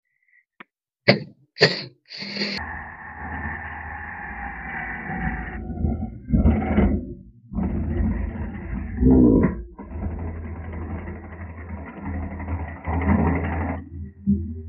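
Cordless impact driver fitted with a DeWalt Impact Clutch adapter driving a self-drilling screw into galvanized sheet steel. A few light metal clicks come first, then the driver runs steadily for several seconds, stops briefly and runs again until near the end. With the screw seated, the adapter's clutch slips and spins instead of stripping the screw's thread in the sheet.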